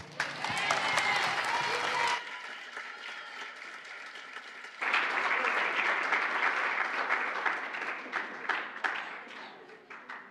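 Audience applauding, with voices mixed in during the first two seconds. The applause dips for a few seconds, comes back strongly, then thins to scattered claps and fades near the end.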